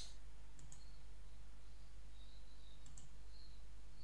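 A few faint computer mouse clicks over a low steady hum: two close together a little over half a second in, and two more about three seconds in.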